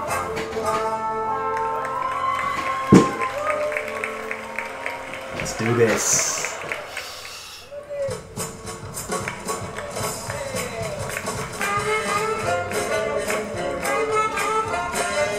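Swing jazz band music with a steady beat for lindy hop dancing, with a sharp loud thump about three seconds in. The music thins out and dips a little past halfway, then the band picks up again.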